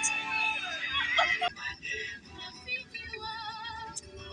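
Music with a singing voice, some of its held notes wavering in pitch.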